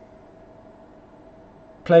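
Faint, steady background hum of room tone, with a thin constant tone in it. A man's voice starts near the end.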